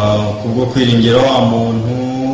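A man's voice holding long, drawn-out vowel sounds at a fairly steady pitch.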